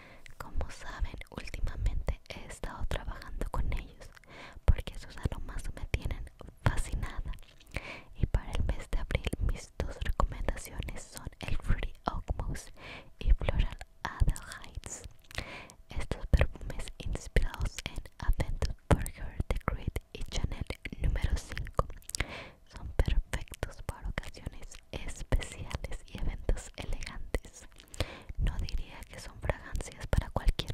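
Whispered speech that runs on throughout, broken by many small sharp clicks.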